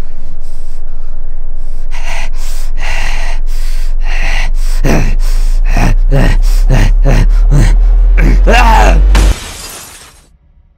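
Horror soundtrack effects: a low drone swells under a rapid run of sharp hits and falling pitch sweeps. A shrill cry comes near the end, then a burst of hiss that cuts off suddenly.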